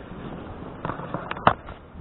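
A handful of short, sharp clicks and knocks, the loudest about a second and a half in, over a faint steady background hiss.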